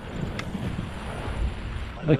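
Wind buffeting the microphone of a camera carried on a moving bicycle: an uneven low rumble, with one faint click about half a second in.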